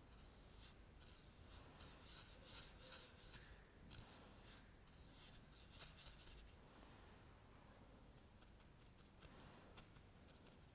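Near silence, with faint soft strokes of a paintbrush brushing and dabbing on watercolour paper, thinning out after about seven seconds.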